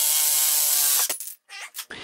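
DeWalt cordless jigsaw sawing through a metal pipe: a steady, rasping buzz from the blade that stops abruptly about a second in, followed by a few faint clicks.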